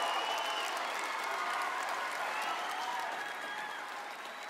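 Studio audience applauding, the clapping slowly dying down, with faint voices over it.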